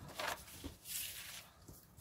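A sheet of scrap paper rustling and sliding as it is laid flat on a cutting mat, with a brief burst of rustle about a second in and a couple of faint taps.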